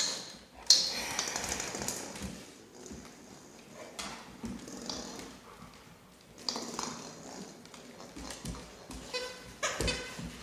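Cane Corsos snuffling and nosing through plush and rope toys on a hardwood floor, with a sharp knock about a second in. A short high squeak comes near the end as one dog mouths the toys.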